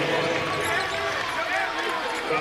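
Arena ambience during a stoppage in a college basketball game: indistinct voices and chatter from players and people courtside in a large, mostly empty arena.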